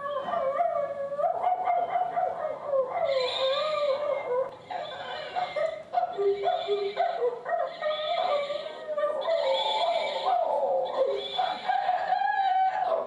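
A wordless voice gliding and wavering in pitch, whimpering and howling like a dog, with a soft hiss pulsing about every second and a half from a few seconds in.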